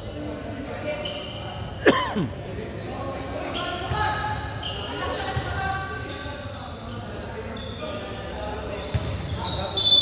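Echoing indoor basketball gym: voices on the court and a basketball bouncing on the hardwood floor. About two seconds in there is a sharp squeak that falls steeply in pitch.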